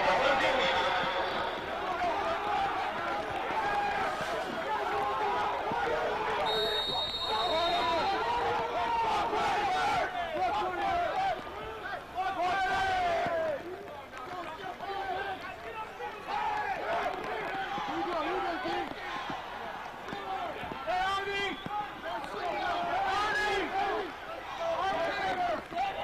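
Stadium crowd voices and chatter at a college football game, many people talking at once. About six and a half seconds in, a whistle sounds once for about a second and a half, plausibly a referee's whistle.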